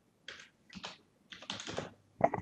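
Computer keyboard typing: a run of separate keystrokes as a word is typed.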